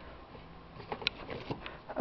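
Quiet room background with a faint low hum and a few soft clicks about halfway through.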